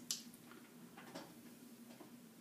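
Faint, short scratchy strokes of a comb and fingers working pomade through short hair. The sharpest comes just after the start and another about a second in, over a faint steady hum.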